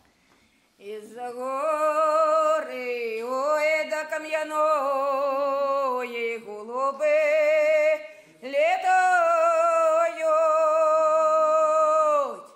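Unaccompanied Ukrainian polyphonic folk singing by two men and two women. They enter about a second in and sing a slow song in long, wavering phrases with short breaks between them, ending on a held note.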